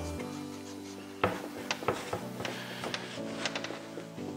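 Soft background music, with a scatter of light clicks and taps starting about a second in as a cloth and wax brush work around a small metal cabinet handle.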